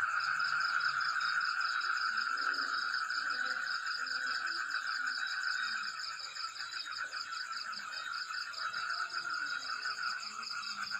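Steady night chorus of frogs and insects: a continuous, rapidly pulsing trill at several pitches at once, easing slightly in loudness about halfway through.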